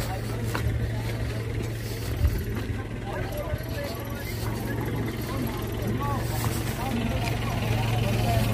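Several people talking in the background, over a steady low hum.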